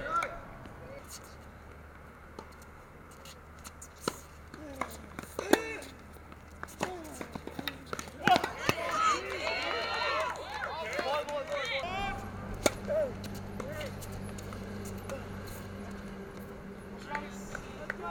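Tennis-court ambience: indistinct voices of players and spectators, thickest in a burst of overlapping voices past the middle, with a few sharp hits of racket on ball scattered through.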